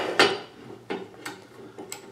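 Steel C-clamps knocking and clinking against the steel bar of a sheet-metal bending brake as they are set in place: one sharp metallic knock just after the start, then a few faint clicks and rattles.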